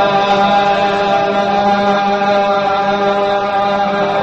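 Qawwali music: a wordless, gliding vocal line held over a steady harmonium drone, with no drum beat.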